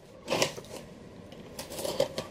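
Someone chewing a crunchy chocolate-coated Penguin biscuit close to the microphone, with a few short crunches.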